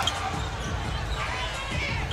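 A basketball bouncing on a hardwood court during live play, over the murmur of an arena crowd.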